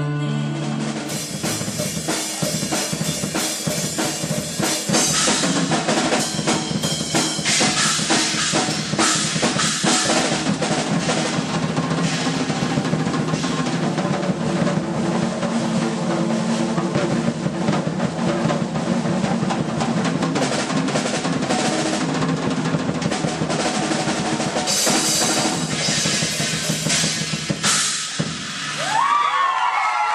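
Yamaha drum kit played live in a fast, busy solo: rapid snare and bass drum strokes with drum rolls and cymbal crashes. The drumming stops shortly before the end.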